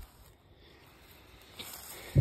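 Faint rustling of dry grass, a little louder near the end.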